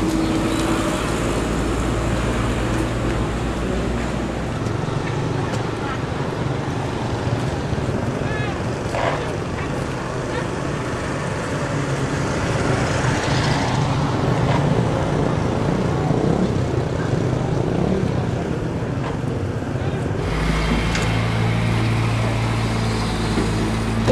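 Steady engine and road noise of a moving motor vehicle. The low rumble thins about four seconds in and comes back strongly near the end.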